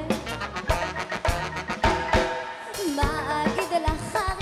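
Live funk band playing, with a punchy drum-kit beat under bass, keys and horns; a female lead vocal comes in about three seconds in.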